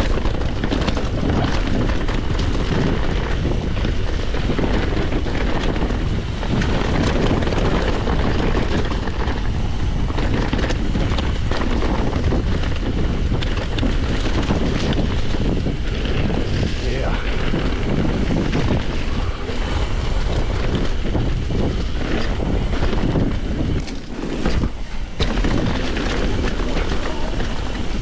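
Wind buffeting the camera's microphone over the rattle and knocks of a mountain bike's tyres, chain and suspension on a rough, muddy downhill trail. The noise is steady and loud, with a brief lull about 24 seconds in.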